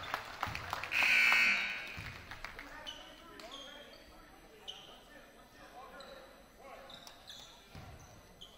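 A basketball bouncing several times on a hardwood gym floor, then a short, loud, shrill sound about a second in. After that come repeated short high squeaks, like sneakers on the hardwood, under the chatter of people in the gym.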